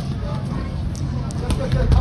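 Low rumble of wind on the microphone at an open-air boxing ring, swelling near the end, under faint crowd voices and a few sharp taps from the ring.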